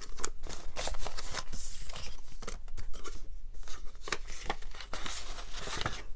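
Paper banknotes rustling and crinkling as a few bills are folded by hand and slipped into a paper cash envelope: a series of short scratchy rustles and crackles.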